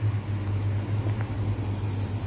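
A steady low mechanical hum, like a fan or motor running, with a couple of faint light clicks from a wire whisk stirring in a metal pot.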